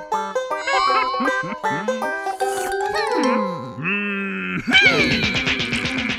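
Cartoon soundtrack of lively plucked-string music, with comic sound effects that slide up and down in pitch. About five seconds in, a louder, noisier burst of sound joins the music.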